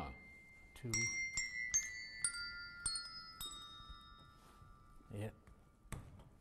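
A set of tuned push-button desk bells (handbells rung by pressing the plunger on top) struck one after another: about six notes stepping down in pitch, each ringing on and overlapping the next before they fade.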